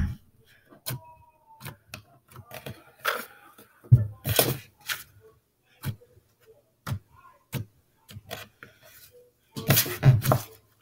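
Hands squeezing and poking a soft, cloud-like slime, giving scattered small clicks and pops with louder squishes about four seconds in and near the end.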